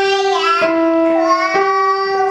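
A young girl singing with instrumental accompaniment whose held notes change a few times.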